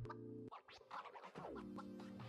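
Background music with scratch-like effects: held notes, a short drop-out about a quarter of the way in, then a note sliding down in pitch among sharp clicks.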